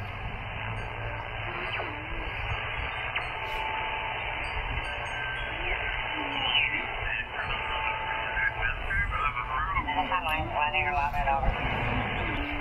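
ICOM IC-7300 HF transceiver receiving on its speaker while the tuning knob is turned up through the 20-metre band: a steady hiss of band noise in a narrow, thin-sounding passband. A short steady whistle comes twice, and snatches of single-sideband voices come in garbled and partly off-tune near the middle and again toward the end.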